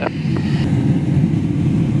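Steady airflow noise in the cockpit of a Grob G109 motor glider gliding with its engine shut down and propeller feathered.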